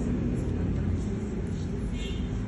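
A steady low rumbling background noise with faint, indistinct voice traces.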